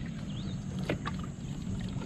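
A small fishing boat being pushed through shallow water with a long wooden pole: short splashes and drips of water, the strongest about a second in, over a steady high-pitched whine.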